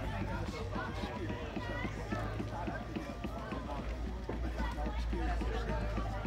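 Background voices of people talking, over a steady low hum.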